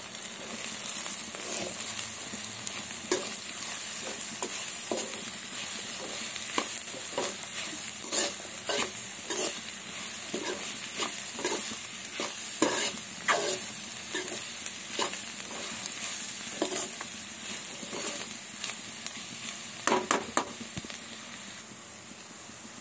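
Chopped onions and green chillies frying in oil in a pan: a steady sizzling hiss, with repeated scraping knocks of a spatula stirring against the pan about once or twice a second, and a quick run of louder knocks near the end.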